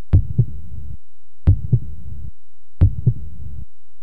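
Heartbeat sound effect on the outro: a low double thump, lub-dub, repeating three times about every 1.35 seconds, each pair followed by a short low hum.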